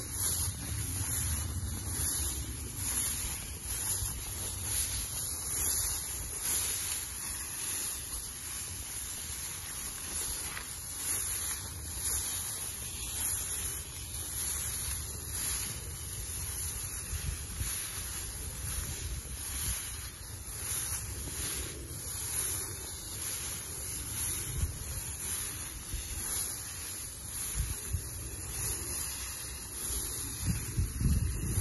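Tall grass swishing against legs in a steady walking rhythm as people wade through it, over the low rumble of wind on the microphone.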